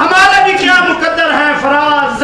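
A man speaking loudly and without a break.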